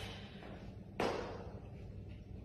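A single sharp thump about a second in, trailing off with a short room echo: a sneakered foot knocking against the wall during a handstand. Faint room tone otherwise.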